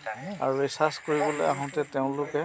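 A person speaking, over a steady high-pitched insect drone in the background.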